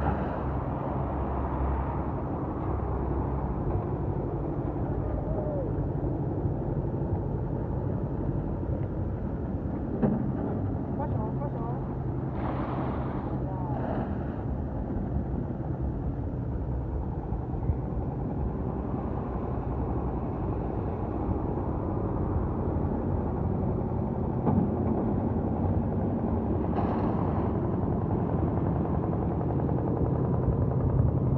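An engine running steadily with a low hum, with indistinct voices now and then.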